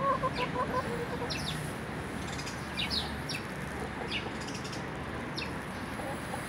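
Ataks chickens clucking while feeding, with a short run of low clucks in the first second. Brief high chirps come and go throughout.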